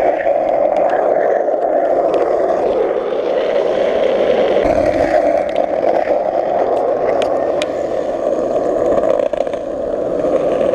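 Skateboard wheels rolling steadily over asphalt, a continuous loud rolling noise with a few faint clicks.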